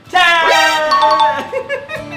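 A short, bright musical sound-effect jingle with chime-like ding-dong tones that starts suddenly, mixed with a voice.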